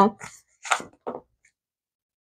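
The end of a woman's short laugh, then two brief soft sounds a little under and just over a second in, then silence.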